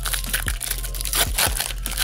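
Foil wrapper of a Pokémon booster pack crinkling and tearing as hands rip it open, a quick run of sharp crackles.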